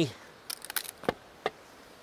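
Splitting axe being wrenched free from a partly split Douglas fir round: a quick run of sharp cracks as stringy fibres give way, then a single knock about a second in and a fainter one shortly after.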